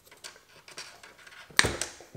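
Small plastic clicks and scrapes as a stuck electrical plug is worked on the back of a heated car side-mirror glass. About one and a half seconds in comes a sharp snap, with a smaller one right after, as the connector pulls free.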